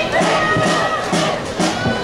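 Marching band playing, with held brass notes and drum hits, while the crowd shouts and cheers over it.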